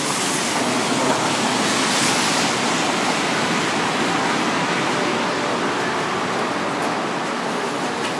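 Steady, even rushing noise of the outdoor surroundings, with no distinct events.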